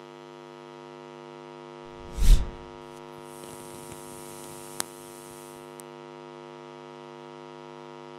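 Steady electrical mains hum with a buzzy stack of overtones, under outro sound effects: a loud whoosh with a low boom about two seconds in, then a high hiss for about two seconds with a sharp click near five seconds.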